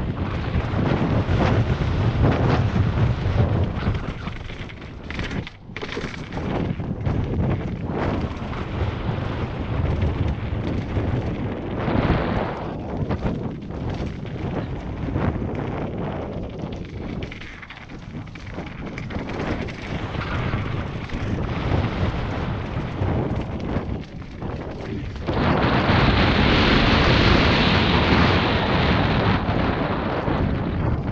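Wind rushing over a helmet-mounted action camera's microphone as a mountain bike rides down a jump trail, with tyre noise on the dirt and frequent knocks and rattles from bumps and landings. The wind noise gets louder and brighter for the last few seconds.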